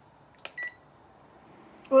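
Induction hob control panel giving one short electronic beep as a key is pressed, just after a small click. A faint, high steady tone follows as the hob starts heating the pot.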